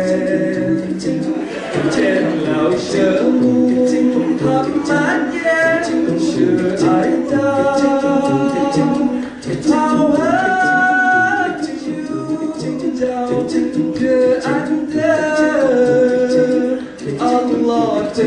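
Male a cappella vocal group singing a selawat, an Islamic devotional song in praise of the Prophet, with several voices in harmony under a lead melody and a low rhythmic vocal part.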